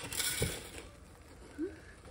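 A spatula stirring cereal through sticky melted marshmallow in a pot: a short scraping noise with a dull knock in the first half-second, then quiet.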